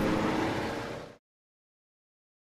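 Military truck's engine and road noise, fading away over about a second and then cutting off to dead silence.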